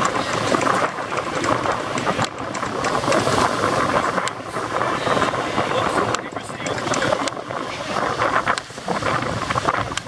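Wind buffeting the camera microphone, a loud rushing noise that rises and falls, with people's voices mixed in underneath.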